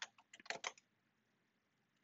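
A few quick clicks of a computer keyboard and mouse in the first second, then near silence.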